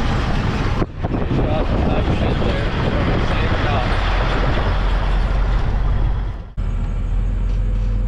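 Truck running as it is driven across an old steel truss bridge: a steady engine and road rumble with wind noise. It breaks off abruptly twice, about a second in and near the end, and after the second break a steadier low drone takes over.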